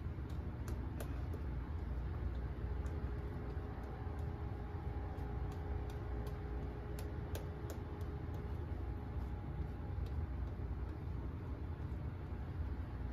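Shaving brush swirling lather over the face: soft brushing with scattered small clicks and crackles of the lather, over a steady low hum.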